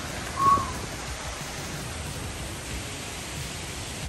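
A steady, even rush of outdoor background noise on a forest trail, with one short call about half a second in.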